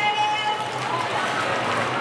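Speech through handheld microphones and a PA system.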